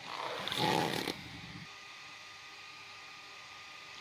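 About a second of rustling handling noise, then a faint steady hum with a few thin tones.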